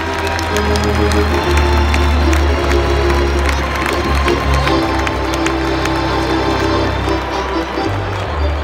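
Arena organ playing long held notes over a sustained bass line, with a crowd cheering and clapping underneath.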